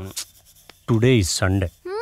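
Speech only: short spoken phrases of film dialogue with brief pauses between them.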